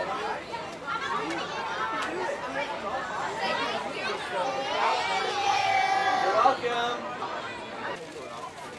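Overlapping chatter of children's and adults' voices, no single speaker clear. About five seconds in, one voice draws out a long high call for over a second; it is the loudest sound.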